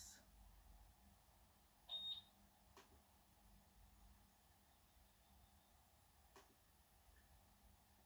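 Near silence: quiet room tone, with one short high beep about two seconds in and two faint clicks from typing on a laptop keyboard.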